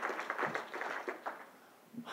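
Audience applause dying away, thinning to scattered claps and fading out about one and a half seconds in.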